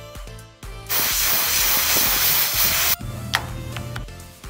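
Water spray from a hose nozzle blasting a screen-printing screen to wash out the exposed emulsion, a loud even hiss that starts abruptly about a second in and cuts off about two seconds later. Background music plays underneath.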